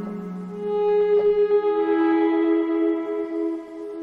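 Modal Argon8 wavetable synthesizer playing a sustained patch. Notes are held: the upper note steps down in pitch about a second and a half in, and the low note dies away.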